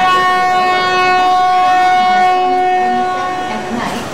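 Horn of an approaching metre-gauge train's locomotive: one long blast at a steady pitch that starts suddenly and cuts off near the end.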